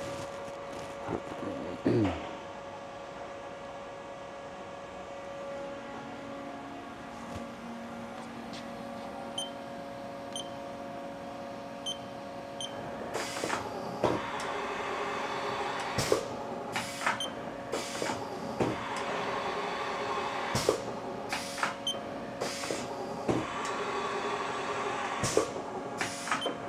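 Tool-changer carousel of a Haas VF-2SS CNC machining centre being jogged round pocket by pocket over a steady machine hum. From about halfway through there is a clunk as each pocket indexes, roughly once a second, with short high beeps in between.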